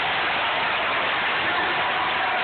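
Large arena crowd cheering and shouting: a steady, loud wash of crowd noise with faint voices inside it.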